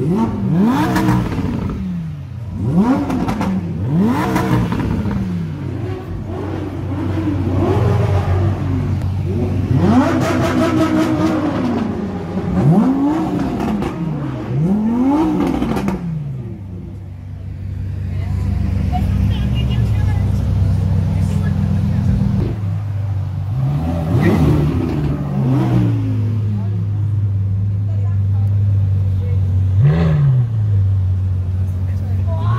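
Audi R8's V10 engine being blipped: a quick series of short, sharp revs, each rising and falling in pitch, over about the first fifteen seconds. It then settles to a steady idle, with two more revs later on.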